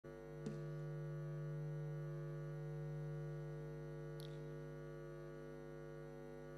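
A steady electrical hum with a buzzy series of overtones, unchanging in pitch, with a faint click about half a second in.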